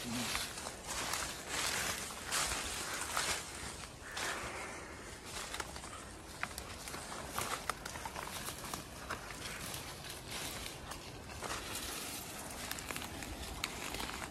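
Footsteps crunching through dry fallen leaves, with brush and undergrowth rustling against legs, in an irregular walking rhythm.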